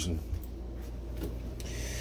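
Faint rubbing and handling noise from a hand-held camera being moved, with a few faint ticks, over a low steady hum.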